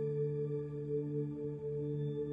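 Soft ambient meditation music: a steady drone of several held tones with a slow, gentle waver.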